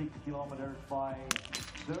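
A single shot from a .22 small-bore biathlon rifle fired standing, a sharp crack about a second in with a short ring after it.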